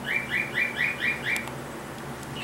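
Pet bird chirping: a quick run of about six short, evenly spaced chirps, about four a second, each swooping up and then holding, stopping about a second and a half in.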